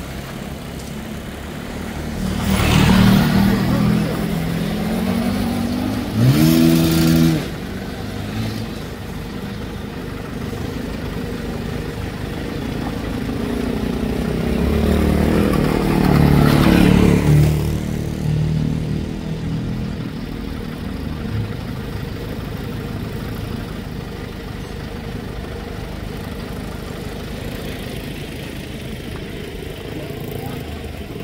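Small commuter motorcycle engine running and accelerating as it is ridden away and back on a test ride after a service. Its note rises steeply once a few seconds in, with louder surges near the start and about halfway through.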